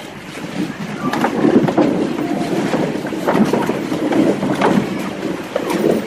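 Several voices speaking at once, a muddled spread of unclear speech, as of a congregation reading or praying aloud together, starting about half a second in.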